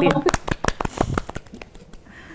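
A few people clapping their hands, a short round of applause that thins out and dies away toward the end.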